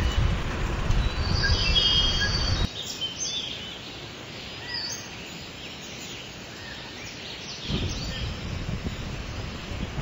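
Outdoor ambience: wind rumbling on the microphone, loud for the first few seconds and again near the end, with scattered short, high bird chirps.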